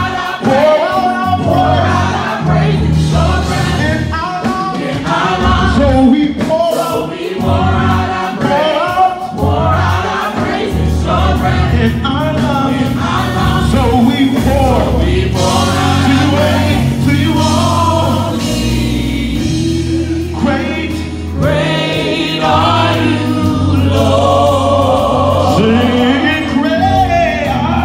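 Live gospel worship singing: a male lead voice with a small group of backing singers, over instrumental accompaniment with held low bass notes.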